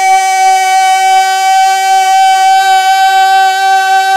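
A man reciting a naat, holding one long, steady sung note on a single pitch without a break.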